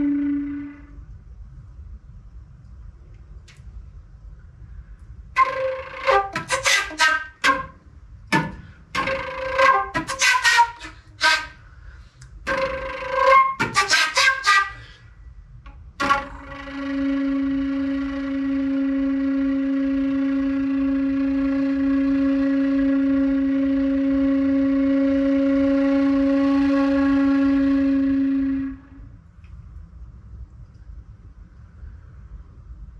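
Solo concert flute improvising: a held low note dies away at the start, then after a pause comes a run of short, choppy notes with sharp attacks, and finally one long low note held steady for about twelve seconds before it cuts off near the end.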